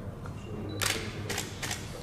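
Camera shutters clicking: three or four quick shots close together around the middle, over a low steady room hum.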